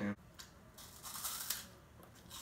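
Faint crisp crunching from biting into a puffed corn snack stick, mostly in a short patch a little under a second in.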